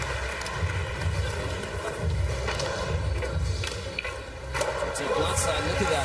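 Skateboard wheels rolling on the course with a continuous low rumble, and a few sharp clacks of the board, over arena crowd noise and background music.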